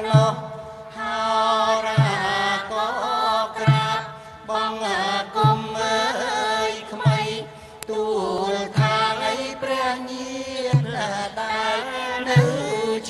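Chanted vocal music: a voice chants a wavering, ornamented melody over a steady low drone, with a low drum beat about every second and three-quarters.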